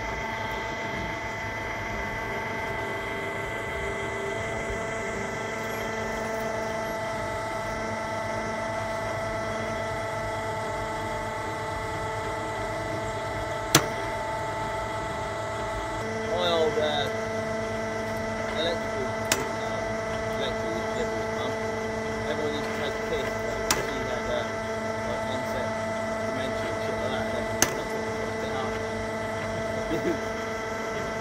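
Cable-pulling capstan winch running steadily with a constant whine as it hauls rope for a cable pull. A lower hum joins about halfway through, and there are a few sharp clicks.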